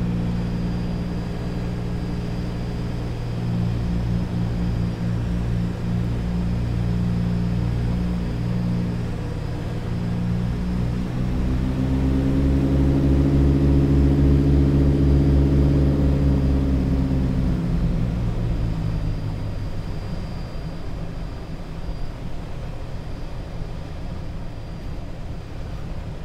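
The twin radial piston engines of a 1943 DC-3 running through a grass-strip landing. Their note swells and rises in pitch, then falls away around the middle, which is the loudest part, as the aircraft touches down and rolls out. The crew says it came down a couple of times, a bounced touchdown.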